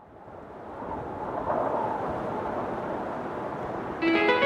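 Steady rushing wind and water noise of a boat under way, with wind on the microphone, fading up from silence over about the first second.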